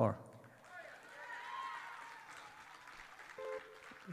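Faint audience response from the hall: scattered voices and cheers that swell about a second in and fade, with a short vocal sound near the end.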